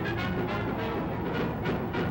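Orchestral music with brass, from an old newsreel soundtrack.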